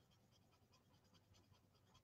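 Near silence: only a very faint scratching of an alcohol marker tip on cardstock.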